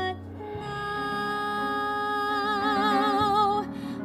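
A woman singing one long held note in a musical-theatre ballad, with vibrato coming in about halfway through, over a soft band accompaniment with guitar.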